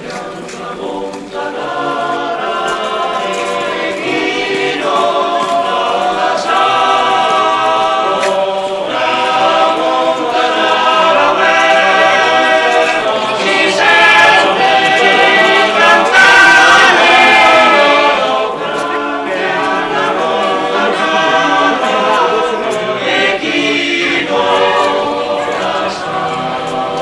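A choir of voices singing together without instruments, a slow hymn-like chant that runs on without a break and swells to its loudest in the middle.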